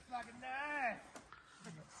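A faint, distant voice calling out once, one drawn-out call that rises and falls in pitch about half a second in, over quiet outdoor background.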